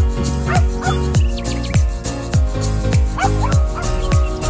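Background music with a steady bass-drum beat. Over it, a dog gives short yips twice, about half a second in and again about three seconds in.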